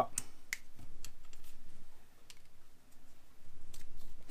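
Light clicks and taps of small rod-building parts being handled: a reel seat and winding check fitted onto a rod blank. A few sharp clicks in the first second, then softer scattered ticks.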